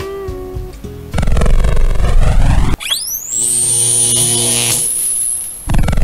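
Background music: the last plucked guitar notes die away, then electronic outro music with sweeping whooshes. A sharp break comes near the middle, then a rising glide settles into a high, steady whistle-like tone before the whooshing returns near the end.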